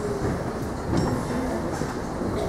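Indistinct murmur of a seated crowd chatting, a steady wash of voices without clear words.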